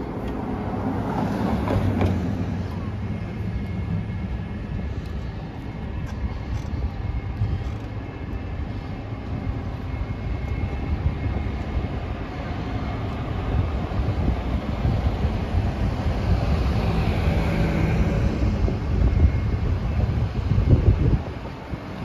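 Steady city street traffic noise with a low, uneven wind rumble on the microphone. A louder swell passes around two-thirds of the way through.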